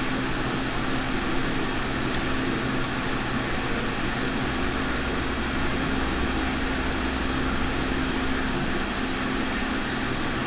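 Steady mechanical hum under an even hiss, like a running fan.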